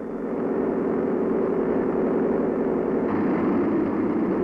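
Large airplane propeller spinning at speed on a wind-tunnel test rig: a loud, steady, low drone of blade and air noise that swells slightly in the first second.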